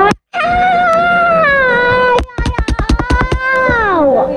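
A voice making one long, drawn-out, angry wail with no words, in the spirit of a 'grrrr'. It turns into a rapid rattling growl about two seconds in, and the pitch falls away at the end.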